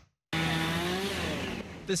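Chainsaw roaring at high speed, its pitch dropping in the second half as the engine slows, cutting storm-downed trees.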